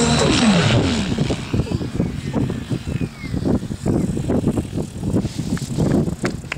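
Music ends with a falling pitch sweep about a second in, giving way to outdoor sound of a radio-controlled model helicopter's rotor and engine, with irregular gusts of wind on the microphone.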